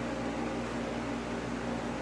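Steady room noise: a low hum with an even hiss and a faint steady tone, with no other event.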